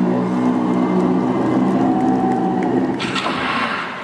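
Live pop music ending on a long held chord with one sustained note over it, then arena crowd noise, cheering and applause, swelling in about three seconds in.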